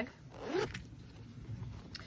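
Metal zipper on a small fabric pouch being pulled open, one short zip about half a second in.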